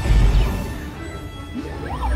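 Space-battle sound effects played through a theme-park dark ride's speakers over music: a deep boom at the start that fades off, then laser-blast zaps that sweep up and down in pitch near the end.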